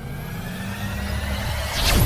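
Cinematic sound effects: a low rumble under a thin rising whine, swelling into a loud hit near the end.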